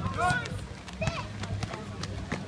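Voices calling out over a basketball game, with a ball bouncing and quick footsteps on the hard court, over a steady low hum.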